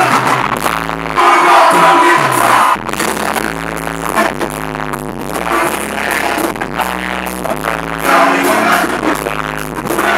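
Live band music played loud through a stage sound system, with a steady repeating bass line and singers on microphones.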